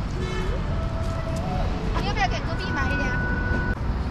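Steady low rumble of street traffic. Faint distant voices and a few short held tones sit over it, with brief bending calls about two seconds in.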